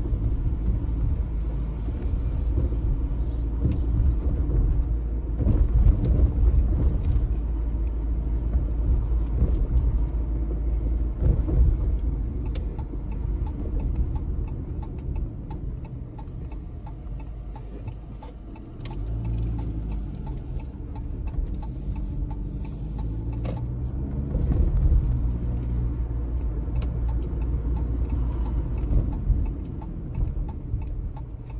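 Car driving at town speed, heard from inside the cabin: a steady low road and engine rumble, with the engine note rising and falling for a few seconds past the middle, and scattered light clicks.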